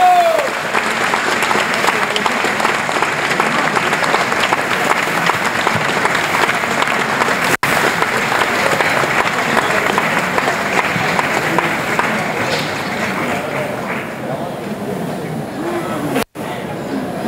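Crowd applauding: dense, steady clapping that eases off in the last couple of seconds.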